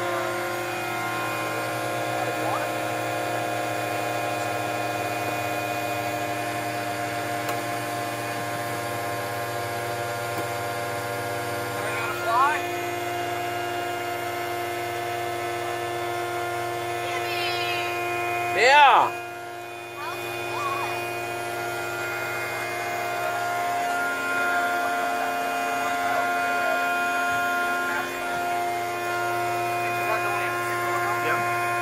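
A steady hum made of several fixed tones, with a short sliding pitched call about twelve seconds in and a louder call near nineteen seconds that rises and falls in pitch.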